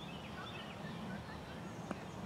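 Outdoor field ambience: birds calling in short, high, gliding chirps over a steady low hum. A single sharp tap sounds near the end.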